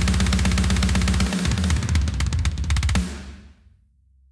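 Programmed metal drums from the Unwavering Studios Saudade sample kit playing back: a rapid, steady stream of bass drum strokes under snare and tom hits, changing into a fill about a second and a half in. The playback stops abruptly about three seconds in, leaving a short ringing tail that fades out.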